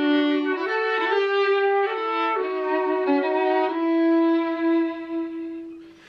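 Flute and violin playing a Christmas tune together as a duet, the notes moving in short steps and then settling on a long held note that dies away near the end.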